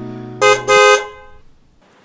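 A car horn honks twice in quick succession, a short toot and then a slightly longer one, over the tail of soft music that fades out.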